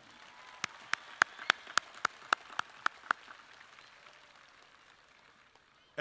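Light, thin audience applause: one set of claps stands out clearly, about three or four a second, over a faint wash of more distant clapping. The claps stop about three seconds in and the wash dies away.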